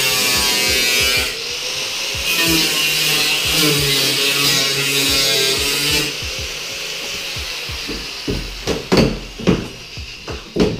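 Angle grinder cutting into rusty sheet metal of a car's rear wheel arch, a steady high hiss for about six seconds that then winds down. A few sharp knocks follow near the end.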